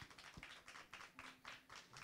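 Faint, scattered clapping from a small audience, several claps a second.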